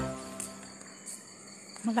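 Background music dying away in the first half second, leaving faint crickets chirping in the night; a voice and the music come back near the end.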